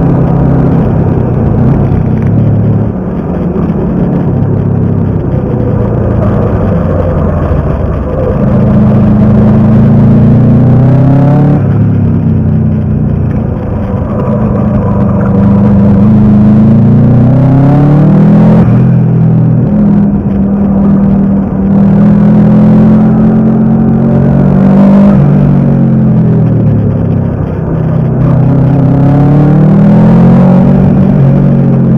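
Turbocharged Subaru Impreza GC8 flat-four engine heard from inside the cabin on a hard lap. It repeatedly climbs in pitch under acceleration and falls back at each shift or lift, about half a dozen times.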